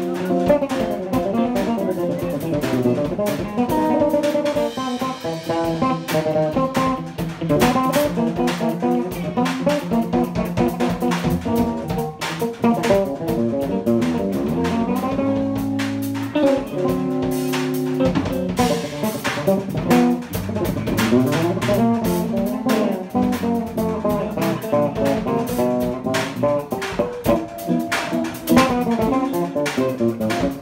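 Instrumental trio of electric guitar, electric bass and drum kit playing live together, the guitar carrying busy melodic lines over bass and drums with cymbals.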